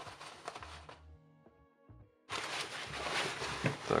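Canvas fabric rustling with small clicks as hands handle a shoulder bag's inner lining and zip pocket, over faint background music. The handling sound drops out for about a second in the middle and then comes back abruptly.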